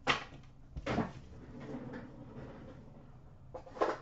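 Trading cards and a small cardboard card box being handled and set down on a glass counter: a sharp knock at the start, a few more short knocks, and light rustling in between.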